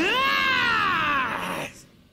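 A young man's long, strained shout that jumps up sharply in pitch and then slides slowly down, breaking off after about a second and a half.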